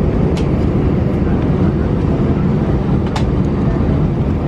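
Steady low rumble of an airliner cabin while the aircraft taxis, from the engines and the rolling airframe, with two faint ticks.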